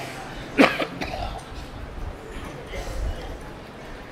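A single short cough about half a second in, then a pause with only a low hum and room noise.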